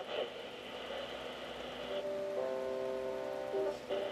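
A Sony ICF-A15W clock radio's small speaker plays a weak FM station through heavy static hiss that "sounds really bad", with a thin steady whine over the first half. About halfway, held music notes come through the static. Reception is poor because the radio's antenna has been broken off.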